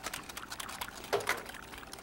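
Wire whisk beating a thin instant-pudding-and-milk mixture in a glass bowl: quick, light clicks and wet spattering as the wires stir the liquid and tap the glass.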